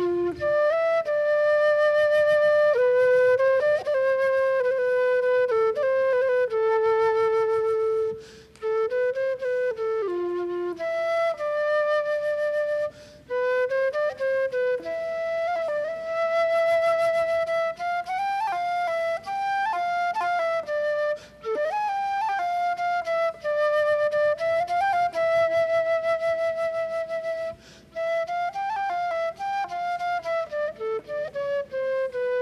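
Solo flute playing a slow melody of held notes, with short breaks between phrases.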